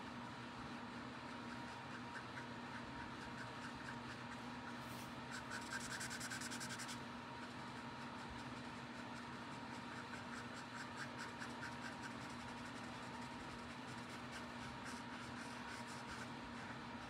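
Faint scratching of a Copic Sketch marker's brush nib stroked back and forth over cardstock, a little louder around six seconds in, over a steady low hum.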